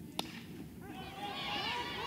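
A softball bat strikes the ball once with a sharp crack just after the pitch. A small crowd's voices then build, many overlapping shouts as the ball carries toward the foul screen.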